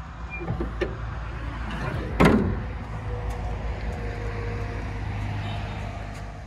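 Bonnet of a Mercedes Sprinter van slammed shut about two seconds in: one loud bang with a short metallic ring. Under it, the steady low hum of the van's 3.0 CDI V6 diesel idling.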